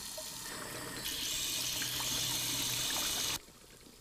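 Water running from a tap into a sink. It grows stronger about a second in and is shut off abruptly shortly before the end.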